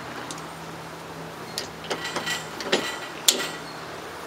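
Scattered sharp metallic clicks and clinks from a single-stage reloading press and its bullet point starter die being adjusted and worked by hand, the loudest about three seconds in. A faint low steady hum sits under the first half.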